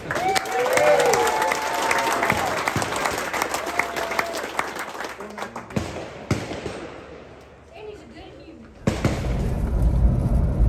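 Small crowd clapping and cheering for an award winner, with voices calling out over it; the clapping fades away over the first six or seven seconds. Near the end a steady low rumble of a vehicle cabin comes in.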